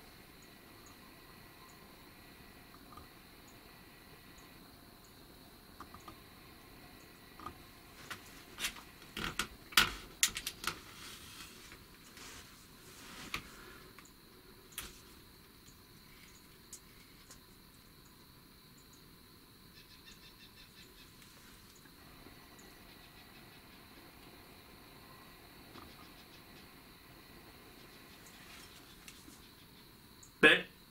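Faint outdoor background with a thin steady high tone, broken by a cluster of sharp clicks and knocks about eight to eleven seconds in and a few single ticks later.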